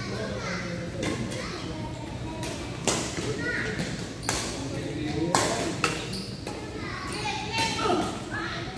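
Badminton rackets striking a shuttlecock in a doubles rally: a series of about six sharp hits, roughly a second apart, echoing in a large hall.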